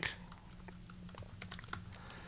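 Faint keystrokes on a computer keyboard: a scattered run of light clicks as code is typed.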